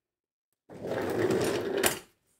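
Office chair rolled across the floor on its casters for about a second, ending in a sharp knock.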